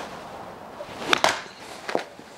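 Golf club striking a ball off a hitting mat: a sharp double crack about a second in, with a smaller click near the end.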